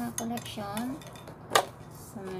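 Metal link watch bracelet clinking and rattling as it is handled, with one sharp, loud clink about a second and a half in. A short murmured voice sounds in the first second.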